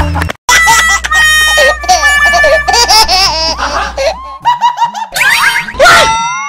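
Edited-in laughter over background music, starting after a brief cut to silence, with rising pitch glides near the end.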